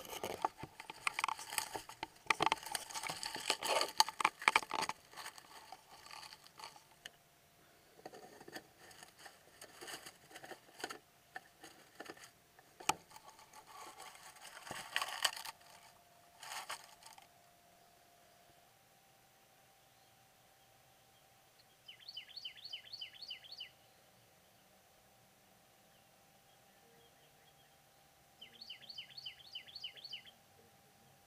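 Handling noise, a clatter of knocks, scrapes and rustles, as a small camera is moved and wedged into place beside a nest. This stops about two-thirds of the way in. Then nestling songbirds give two short bursts of rapid, high begging chirps, one a few seconds after the handling stops and one near the end.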